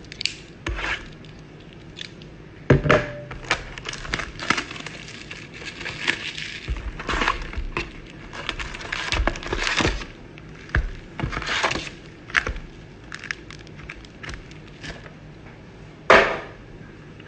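Plastic shrink-wrap crinkling and rustling as a cardboard trading-card box is unwrapped and opened, with foil packs handled and set down on the table. A sharp knock about three seconds in is the loudest sound.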